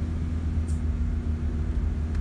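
Steady low drone of a car's engine and tyres on the road, heard from inside the moving car's cabin.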